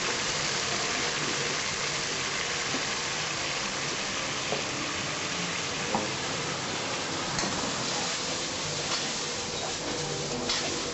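Curry sauce sizzling in a wok-style pan over a gas burner: a steady hiss with a few faint clicks scattered through it.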